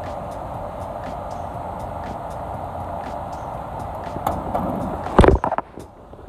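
A small screwdriver worked into the release of an ABB rotary disconnect handle over a steady rushing hum. About five seconds in there is a short cluster of sharp clicks and knocks.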